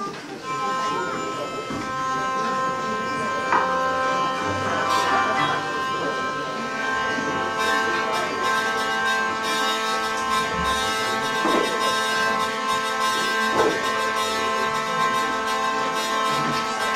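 Hurdy-gurdy sounding a steady drone of several held notes, starting about half a second in and growing fuller about six seconds in. A few light knocks fall over it.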